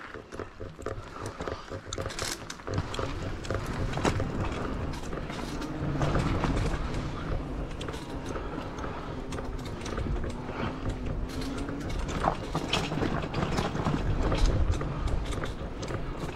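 Electric mountain bike rolling down a dirt forest trail: a continuous rumble of knobby tyres over dirt and roots, with frequent sharp clicks and rattles from the bike and its camera mount.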